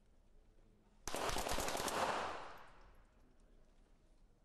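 Several .22 sport pistols fired almost together by a line of shooters: a tight cluster of sharp cracks lasting about a second, starting about a second in. The hall's echo then dies away over the next second.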